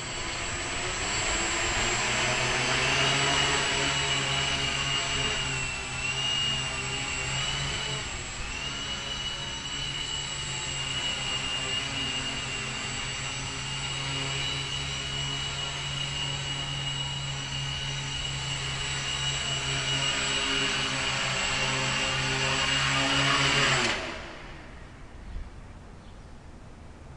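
Brushless electric motors and propellers of a homemade MultiWii multirotor running in flight: a steady buzzing whine with a high motor tone that wavers for a couple of seconds early on. It swells slightly, then cuts off suddenly near the end.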